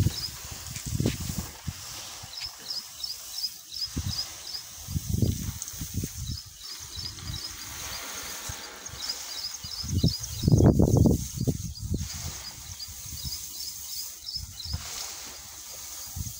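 Soybean seeds rustling as gloved hands stir and turn them on a plastic sheet while mixing in a seed-treatment chemical. Runs of quick, high chirps repeat throughout, and there are low rumbling bursts, the loudest about ten seconds in.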